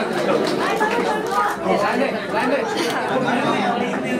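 Indistinct chatter of several people talking at once, with no single voice standing out.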